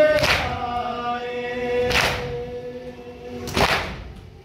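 Men chanting a nauha, a Shia mourning lament, in long drawn-out notes. Three loud, sharp slaps of matam, the mourners beating their chests in unison, mark the beat about every one and a half to two seconds. Each slap rings in the hall.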